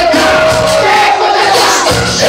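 Men's voices chanting or singing along loudly into a microphone, amplified through a party sound system, with crowd voices joining in. Cumbia music plays underneath, its bass dropping back during the held notes.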